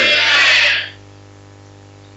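Loud shout of many voices, a congregation answering the close of a prayer, dying away within the first second. After it only the steady low hum of the cassette recording remains.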